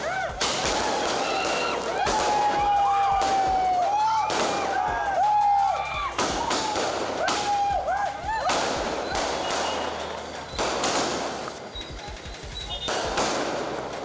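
Firecrackers bursting in an irregular string of sharp bangs, roughly one a second, while a crowd shouts and whistles over them.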